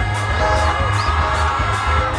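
Amplified live band music through PA speakers, with a steady beat of bass pulses and cymbal strokes about three times a second, and singing over it.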